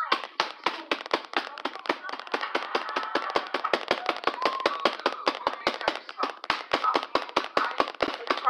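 A quick, even run of sharp claps or taps, about five a second, with a voice underneath.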